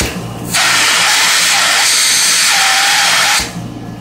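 Air rushing into the open end of a 1925 Spencer Turbine Cleaner's suction hose with the turbine at full speed: a loud, steady hiss of suction over the motor's hum. The hiss dips just after the start, comes back about half a second in and drops away about three and a half seconds in.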